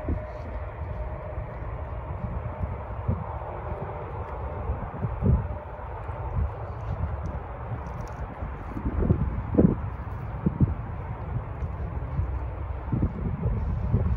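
Wind buffeting the microphone: a steady low rumble with several irregular dull thumps from stronger gusts.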